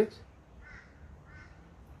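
Two faint, short bird calls a little under a second apart.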